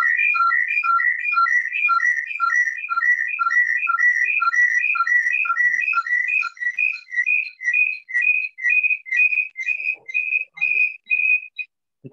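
A high, whistle-like tune of short clean notes: a rising three-note figure repeats about twice a second. Over the second half the lower notes drop out, leaving one repeated high note that stops shortly before the end.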